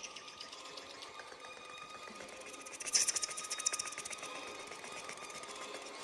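Electronic experimental sound: a rapid, machine-like clicking texture over a faint steady high tone, with a louder burst of hiss and clatter about three seconds in.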